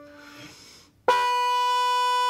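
The last of a piano note dies away, then about a second in a trumpet sounds one steady held note, fingered with valves one and two. The player has deliberately changed the tightness of her lips, so the note is off from the piano's D.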